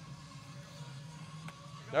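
Low background with a faint steady hum and one faint click about one and a half seconds in.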